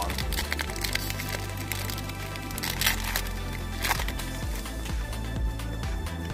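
Foil wrapper of a Pokémon card booster pack crinkling and tearing open, with its sharpest crackles about three and four seconds in, over background music.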